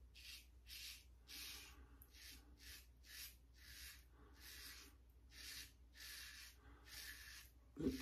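Safety razor scraping through lathered stubble in short, faint strokes, about two a second.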